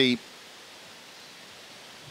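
Whitewater rapids rushing: a faint, steady, even hiss of fast-flowing river water.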